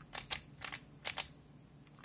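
Plastic 3x3 puzzle cube having its layers turned by hand: a quick run of sharp clicks over about the first second as the faces snap round.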